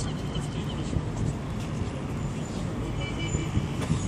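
Steady low rumble of distant city traffic, with some wind on the microphone.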